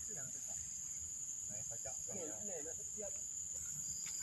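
Steady high-pitched drone of insects, with faint voices talking in the background around the middle.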